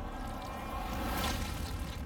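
Horror trailer sound design: a deep, steady rumble under a hissing whoosh that swells to a peak a little past a second in, then fades.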